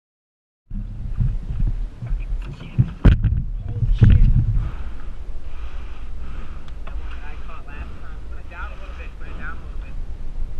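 Wind buffeting a small camera's microphone as a steady low rumble, cutting in just under a second in, with two loud knocks about three and four seconds in.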